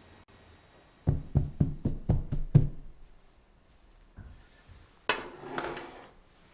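A dark metal cake mould knocked down several times on a cloth-covered wooden table: a quick run of about six knocks, about a third of a second apart. Near the end, a short rustle of the cloth being handled.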